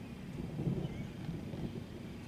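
Distant thunder from an approaching thunderstorm, a low rumble that swells about half a second in and eases off near the end.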